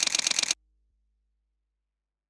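Camera shutter firing in a rapid burst, about ten sharp clicks a second, cutting off about half a second in.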